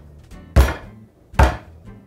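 A wooden French rolling pin beating a hardened block of butter and beef tallow on a wooden board: two heavy thuds a little under a second apart, part of a steady series of strikes. The fat block is being beaten to soften it and make it pliable for laminating dough.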